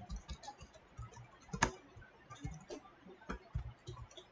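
Typing on a computer keyboard: a quick, irregular run of faint key clicks, with one sharper keystroke about one and a half seconds in.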